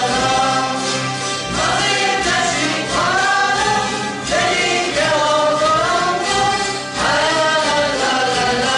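Hungarian citera (folk zither) ensemble strumming a folk tune together, with voices singing the melody in unison over the strings in short phrases.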